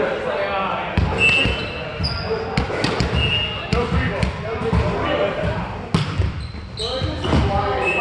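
Volleyball game in a gym hall: several sharp slaps of the ball being hit or landing, short squeaks of shoes on the court floor, and players' voices, all echoing in the large hall.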